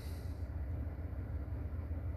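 Steady low hum of background noise with no other sound.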